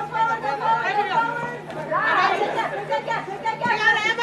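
Indistinct chatter: several voices talking and calling over one another, with a faint steady low hum beneath.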